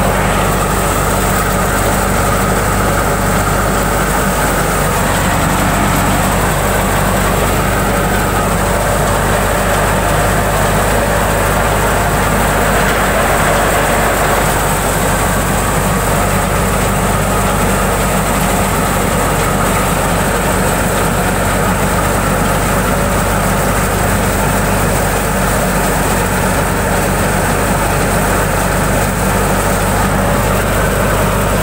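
Tractor-driven wheat thresher running steadily: a loud, constant machine drone with the low hum of the engine under it.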